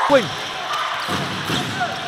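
Indoor basketball game sound: a basketball being dribbled on the hardwood court over a steady murmur from the arena crowd.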